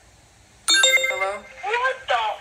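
A short electronic ringtone-like chime from a video-chat app, starting suddenly about two-thirds of a second in, as a new chat partner connects; a voice follows near the end.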